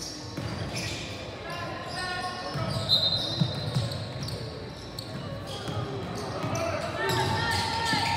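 Basketball game in a gymnasium: a ball bouncing on the hardwood court among echoing voices of players and spectators. A short, high-pitched squeak comes about three seconds in.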